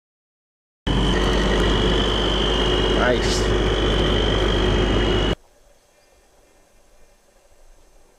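An engine running steadily with a steady high whine and a low hum, starting abruptly out of dead silence. A brief rising squeak sounds about three seconds in. The engine sound cuts off suddenly about five seconds in, leaving faint quiet background sound.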